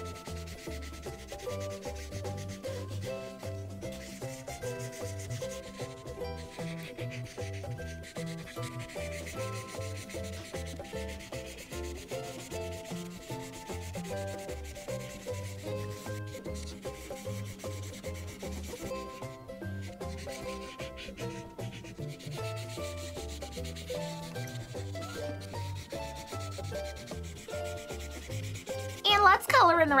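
A Prismacolor Premier marker rubbing over paper in repeated strokes as a large area is filled in, over soft background music with a steady bass line.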